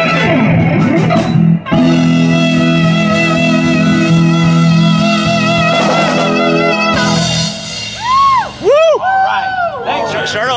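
Live rock band playing: keyboard, saxophone, electric guitar, bass and drums on held chords. Near the end come a few swooping notes that rise and fall.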